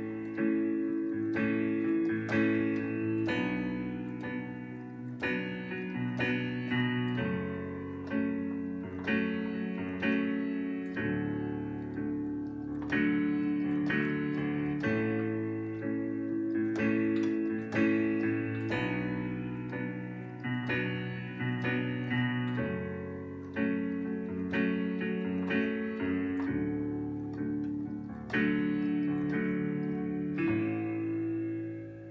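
Digital keyboard with a piano sound, played with both hands: low bass notes under sustained right-hand chords, the chord changing every couple of seconds. It is an R&B progression cycling A major, B minor, F-sharp minor and D major.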